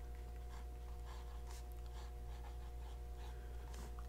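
Broad steel-and-gold nib of a Platinum 3776 fountain pen faintly scratching across paper in short strokes as numerals and letters are written, over a steady low electrical hum.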